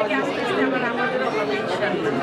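Speech only: a woman talking into the interview microphones, with the chatter of a crowd behind her.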